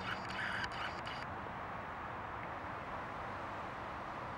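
Steady background noise, with a short, harsh animal call during the first second or so.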